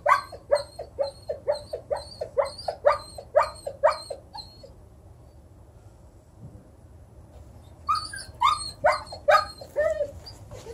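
A dog giving short, high yelping barks that drop in pitch, about two a second for the first four seconds or so, then a few more near the end after a quiet gap: the distress calling of a dog with separation anxiety.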